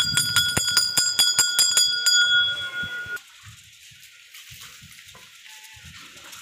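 Metal temple bell struck rapidly and repeatedly, about five strikes a second, its clear ringing tones building over one another. The striking stops about two seconds in and the ring dies away by about three seconds in.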